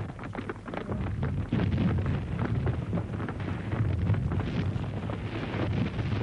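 Artillery bombardment: a dense, continuous rumble of many overlapping gun blasts and shell bursts, building up about a second in.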